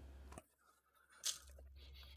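Very quiet room tone, with one short, soft crackle a little over a second in.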